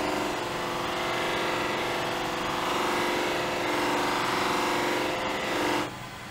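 Cloth buffing mop spinning on a lathe with the edge of a wooden platter pressed against it, a steady rubbing over the hum of the lathe and dust extractor. The sound drops sharply near the end as the platter comes off the mop.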